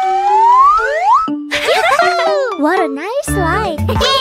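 Cartoon soundtrack: a long rising glide in pitch over the first second, then quick wavering up-and-down pitched sounds, with children's music and a steady bass beat coming in near the end.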